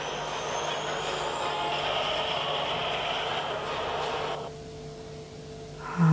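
Heavy military vehicles unloading from a landing ship onto a beach: a steady noisy rush of machinery that cuts off suddenly about four and a half seconds in, leaving a faint steady hum.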